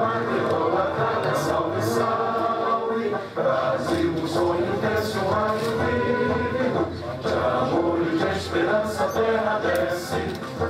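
A choir singing an anthem with musical accompaniment, held notes running without a break.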